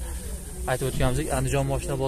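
A man's voice talking, over a steady low hum.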